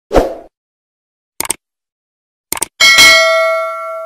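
Subscribe-button animation sound effects: a short thump, then two quick clicks about a second apart, then a notification bell ding that rings and slowly fades.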